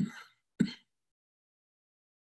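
Two short non-speech vocal sounds from a man about half a second apart: a breathy burst, then a brief sharper one.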